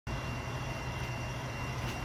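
A steady low rumble or hum with a faint high whine above it, unchanging and with no distinct knocks or events.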